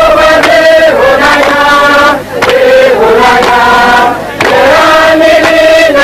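A group of voices chanting together in unison, loud, in long held phrases of about two seconds with brief breaks between them.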